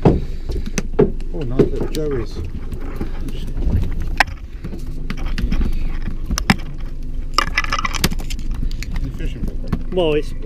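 Boat engine idling with a steady low hum, while fishing tackle knocks and clatters against the boat every few seconds and voices talk in the background.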